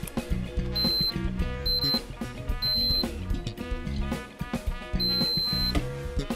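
Background music with a steady beat, over which a multimeter's continuity tester sounds four short, high, steady beeps as its probe touches the terminals of a rotary drum switch. The last beep is the longest. Each beep marks a closed connection between the probed terminals.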